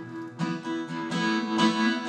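Acoustic guitar strummed in a steady rhythm, chords ringing between sung lines of a live song.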